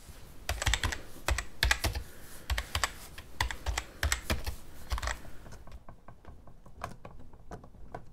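Wooden mallet striking a bench chisel to chop a mortise into a timber post: a quick, irregular run of sharp knocks, each with a dull thud, for about five seconds, then lighter, sparser taps.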